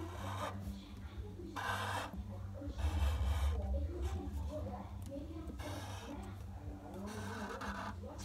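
Black Sharpie marker rubbing across paper in a few short scratchy strokes while drawing, over faint television voices and a steady low hum.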